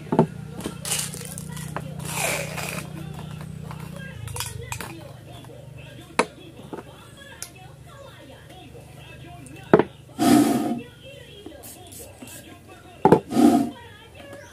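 Scattered clicks and knocks from a homemade PVC toy gun being handled: lifted off its wooden rest and held upright as it is loaded. Two short, louder bursts come near the end, the last about a second before the close.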